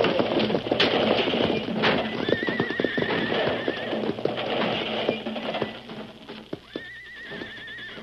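Radio-drama sound effects of a runaway six-horse stagecoach crashing: a dense clatter of hooves, wheels and rattling that is loudest at first and dies away over about five seconds. A horse whinnies about two seconds in and again near the end.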